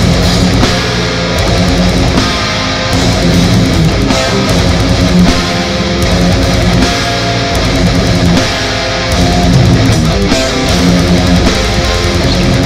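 A death/thrash metal band playing live: distorted electric guitars, bass and fast, continuous drumming.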